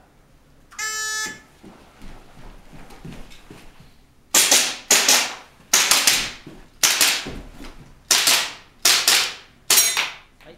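An electronic shot-timer start beep, then after a pause seven sharp airsoft pistol shots fired a second or less apart, each ringing out briefly in a small room.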